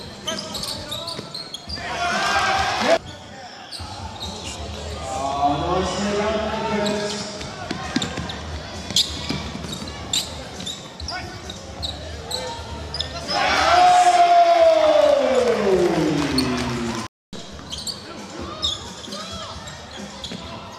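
Basketball game sound in a hall: the ball bouncing on the hardwood court and voices of players and spectators. A loud shout comes near the start, and about two-thirds through a loud, drawn-out voice falls steadily in pitch before cutting off suddenly.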